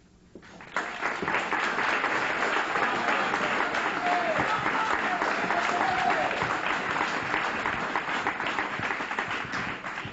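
Audience applauding. It starts about a second in and holds steady, many hands clapping together.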